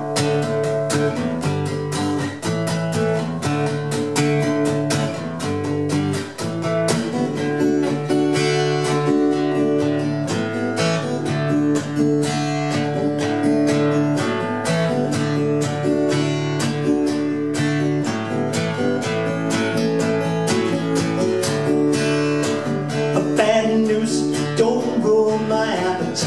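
Cort acoustic guitar strummed in a steady rhythm through changing chords, the instrumental intro of a song before the vocal comes in.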